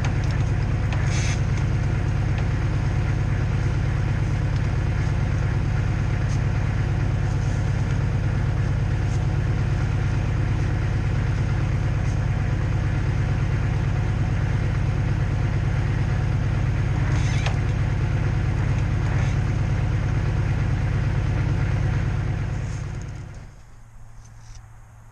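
An engine idling steadily with a deep, even hum and a few faint clicks over it, fading out near the end.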